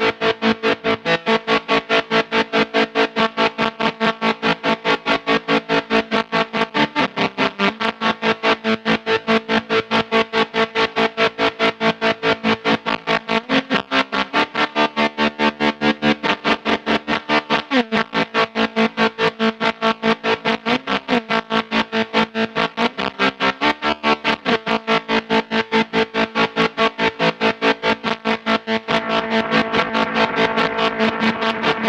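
Electric guitar played through a Chase Bliss Audio × ZVEX Bliss Factory two-germanium-transistor fuzz pedal. Held fuzzy notes are chopped into a rapid, even pulse several times a second, and the pitch shifts every few seconds.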